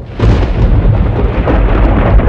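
A loud, continuous deep rumble with scattered crackles, swelling in and jumping to full level just after the start: an intro sound effect under an animated title.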